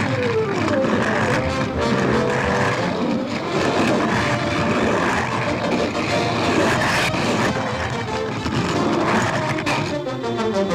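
Fast orchestral cartoon score, with a falling glide near the start, played over the running noise of a roller coaster car on its track; a sharp hit comes about seven seconds in.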